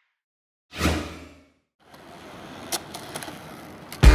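Logo intro sound effect: a sudden swoosh with a deep boom about a second in, dying away within a second. After a short gap, faint outdoor background noise with a few light clicks.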